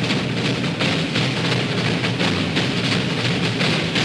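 Orchestral dance music driven by heavy drums and percussion, with a dense, repeated beat.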